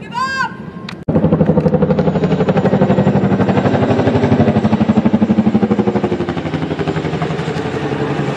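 Boeing CH-47 Chinook tandem-rotor helicopter flying low overhead, its rotors beating in a loud, rapid, steady chop that starts abruptly about a second in. Before it, a brief high-pitched shout.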